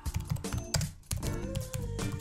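Quick clicking of typing on a Lenovo ThinkPad laptop keyboard over background music with steady low bass notes; a held higher note comes in about halfway through.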